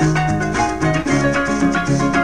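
Instrumental passage of Venezuelan llanero music: a harp plays a quick plucked melody over a moving bass line, with a steady high maraca rattle keeping the beat.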